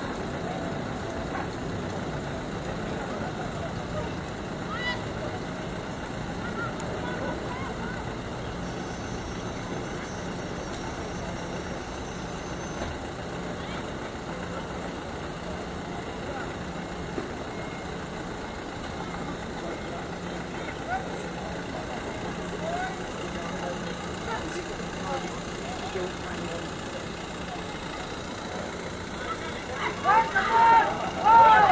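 Steady open-air ground ambience at a rugby match: an even wash of background noise with a steady low hum, and faint, scattered voices of players and onlookers.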